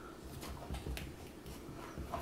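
Faint handling sounds of a clear plastic collar assembly being moved by hand: a few light, scattered ticks and taps.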